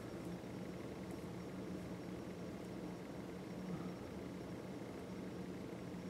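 Quiet room tone: a steady low hum under a faint even hiss.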